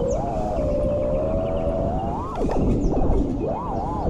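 FPV quadcopter's Axis Flying Black Bird V3 1975kv brushless motors whining with their propellers. The pitch holds steady, climbs sharply about two seconds in, then dips low and sweeps back up as the throttle is worked, over a rush of wind noise.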